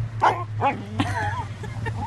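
Dog giving a few short barks and yips, then a wavering, whine-like call about a second in.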